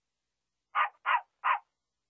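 A dog barking three times in quick succession, short sharp barks about a third of a second apart, answering a demand to hear its voice.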